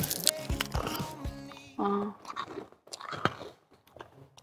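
A donkey chewing sugar cubes, a run of sharp crunches that thin out toward the end.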